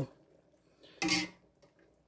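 Near silence, broken about a second in by one short vocal sound from a person, a brief voiced murmur with breath.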